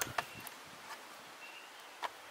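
A couple of small handling clicks at the start, then a quiet outdoor background with two faint, short high chirps from a bird.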